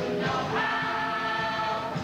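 Stage cast singing together as a chorus, holding one long note from about half a second in.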